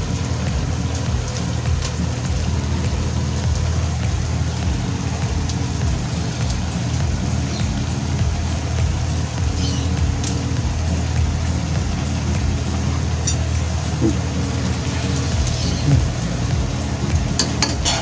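Squid adobo simmering in a wok: a steady sizzling hiss with a low, steady hum underneath.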